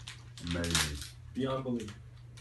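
Two short vocal sounds, like a brief exclamation or laugh, with light clicking from gloved hands handling small vials and medical packets.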